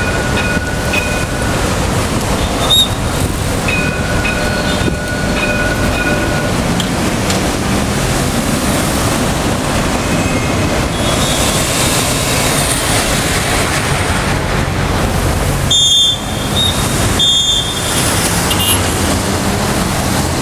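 A VLT Carioca light-rail tram passing slowly through city street traffic, with car engines and tyres around it. Two long, steady high-pitched squeals come in the first six seconds, and two short shrill tones come about three-quarters of the way through.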